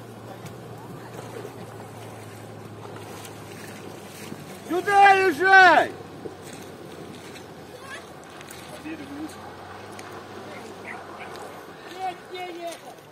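Steady low hum of a UAZ flatbed truck's engine heard from a distance as it fords a river. About five seconds in, a voice calls out twice, loud and rising then falling in pitch.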